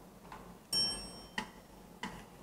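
Metronome-style count-in clicks from a backing track in triple time: a higher accented click about two-thirds of a second in, then two lower clicks at the same even spacing.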